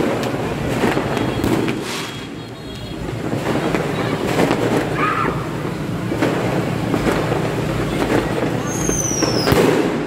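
New Year fireworks and firecrackers going off across the town, with repeated pops and bangs at uneven intervals. A short falling whistle is heard about nine seconds in.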